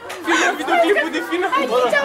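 Several people talking at once, no words clear: speech only.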